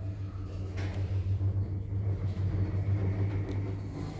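Passenger lift car travelling between floors: a steady low hum from the drive, with a faint high whine coming in about a second in.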